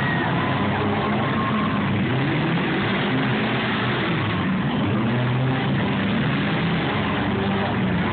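Demolition derby cars' engines running in the arena, with pitch rising and falling as they rev several times.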